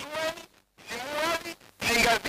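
Speech only: a man talking into a studio microphone, in short phrases with brief pauses.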